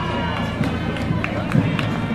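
High school marching band passing in the street, with drum beats under held brass notes, and crowd voices.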